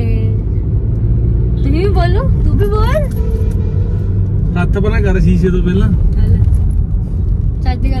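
Steady low rumble of a car's engine and tyres, heard from inside the cabin while it is being driven.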